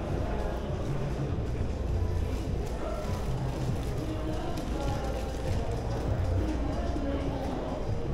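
Shopping-mall ambience: indistinct chatter of passing shoppers mixed with background music, echoing in a large indoor hall.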